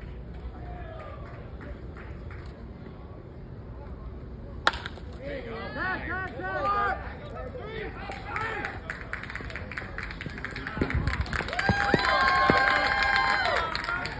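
A single sharp crack of a bat hitting a baseball about a third of the way in, followed by spectators shouting and cheering, with long drawn-out yells near the end.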